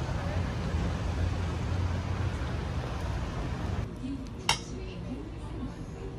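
City street noise with a low traffic rumble, cut off abruptly about four seconds in by a quieter restaurant room, where a single sharp clink of metal tableware rings out.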